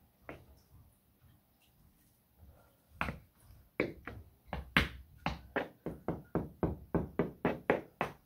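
Hard-soled shoes striking a wooden board in a steady rhythmic beat, about three to four strikes a second. A few faint taps come first, and the beat starts about three seconds in.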